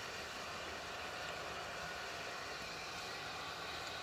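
A steady, even rushing noise with nothing standing out from it.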